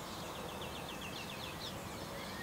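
A small bird singing a quick trill of short, high repeated notes, about eight a second, that stops a little before the end.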